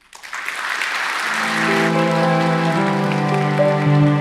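Audience applause that starts just after the talk's closing words. About a second in, slow closing music of low sustained string notes comes in and rises over it.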